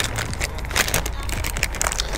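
Clear plastic bag of soft-plastic worms crinkling and rustling irregularly as it is handled and opened, over a low steady rumble.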